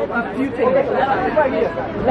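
Indistinct chatter: several people talking over one another, no words clearly picked out.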